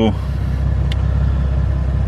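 Steady low rumble of an idling car engine.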